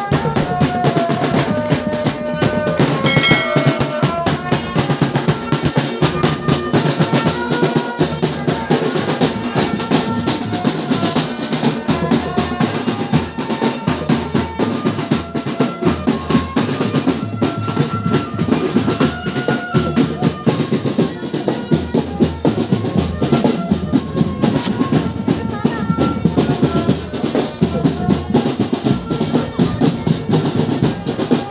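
Marching drum band playing: bass drums and other marching drums beating a dense, steady rhythm, with a melody line running over the drums.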